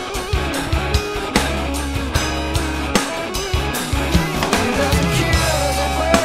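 Rock music with guitar and bass, with a drum kit played along to it in a steady beat.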